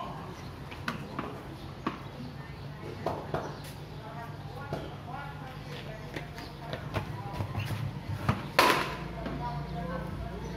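Light knocks through a game of backyard cricket, then one loud, sharp crack near the end, the sound of a cricket ball being struck on a tiled courtyard, with faint voices in the background.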